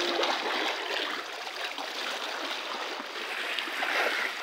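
Shallow seawater washing and splashing over rocks, a steady rushing of small waves.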